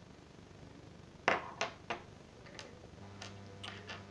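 A few light clicks and taps from small metal parts, a bent copper tube and a nail, being handled on a wooden tabletop: three sharp ones close together a little past a second in, then fainter ones later. A low steady hum comes in near the end.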